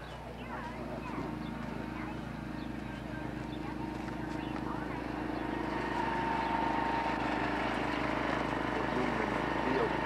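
A motor running steadily, with a constant hum that grows gradually louder.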